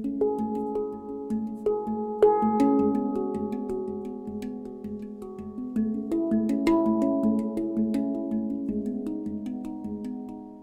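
A steel handpan played with bare hands: a slow melody of ringing, overlapping notes, each struck lightly and left to sustain, over a low note that keeps coming back, with a few sharper accented strikes.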